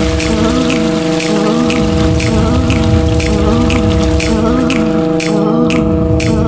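Electroacoustic music of layered samples: several held drone tones under a dense, rain-like noisy wash, with short noisy hits recurring throughout.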